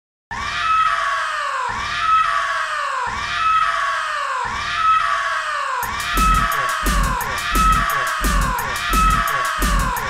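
Hardtekk electronic music intro: a falling swooping sound repeats about every second and a half, then about six seconds in a deep kick and fast hi-hat ticks come in under it.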